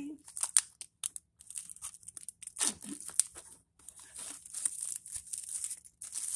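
Thin plastic shrink-wrap crinkling and tearing as it is pulled off a new deck of tarot cards, in irregular short crackles.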